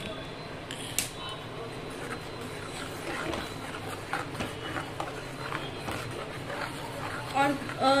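Gas stove knob turned and the burner lit with a sharp click about a second in, then a steel spatula stirring thick curry gravy in a kadai.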